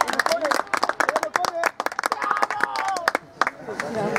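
A few spectators clapping close by, quick irregular hand claps mixed with voices, dying away about three seconds in; the clapping is applause for a good play.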